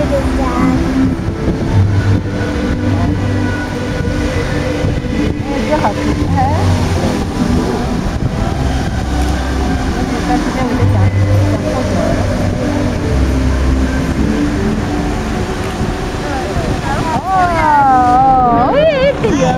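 Music played over outdoor loudspeakers for a water fountain show, with held low bass notes changing every second or two and a singing voice with wide vibrato near the end, over the rushing spray of the fountain jets.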